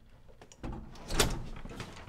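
A door being opened by its lever handle, the latch giving a sharp clunk about a second in, followed by the rustle of the door moving.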